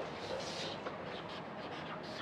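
Felt-tip marker writing on a whiteboard: a few short, faint scratchy strokes as a word is written.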